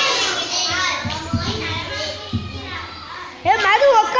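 Many children talking at once in a classroom, with a high voice calling out loudly near the end.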